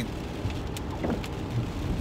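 Steady road noise inside a moving car's cabin, made by tyres on a wet road and the engine running.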